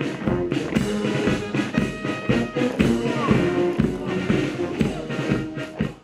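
Military brass band playing a march, with brass, saxophones and a steady beat on snare and bass drum. The music cuts off just before the end.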